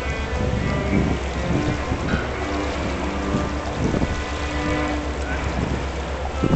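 Outdoor riverside ambience: a steady low rumble and hiss, with short faint tones scattered over it.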